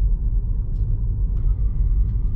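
Steady low road and tyre rumble inside the cabin of a Tesla Model 3 driving slowly at about 15 mph.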